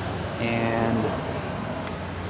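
Insects trilling steadily in a high, evenly pulsing tone, with a short voiced hum from a person about half a second in.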